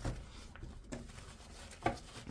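Quiet rustling and handling of a tissue-wrapped card deck and its cardboard box on a table, with a sharp light knock near the end as something is set down or tapped.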